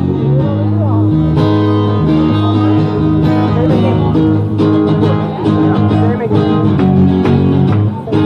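Live acoustic guitar strumming over a steady bass line, an instrumental passage with no singing.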